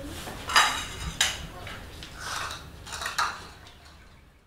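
A metal spoon clinking and scraping against a ceramic bowl, with about four sharp, ringing clinks.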